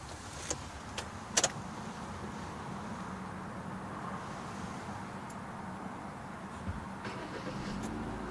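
2014 Kia Rio's 1.6-litre 16-valve DOHC inline-four started with the key. A few sharp clicks come in the first second and a half as it starts, then it settles into a steady, even idle hum.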